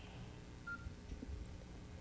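Quiet room tone in a pause, with one short, faint, high beep about two-thirds of a second in.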